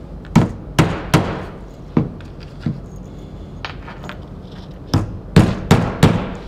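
Claw hammer driving nails into a plywood board with sharp, separate blows: three quick strikes within the first second or so, two more spaced apart, then three more about five seconds in.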